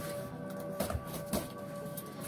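Steady background music with a couple of short scrapes of a knife cutting through a cardboard box, about a second in and again a moment later.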